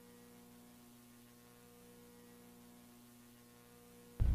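Near silence with a faint, steady hum.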